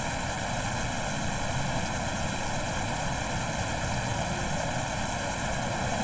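Steady, even background hiss with no speech, unchanging throughout.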